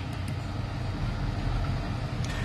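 Steady low background rumble with a faint haze above it, with a couple of faint ticks about a quarter of a second in.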